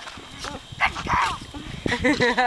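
A dog gives a couple of short barks about a second in, amid faint background voices and scuffling.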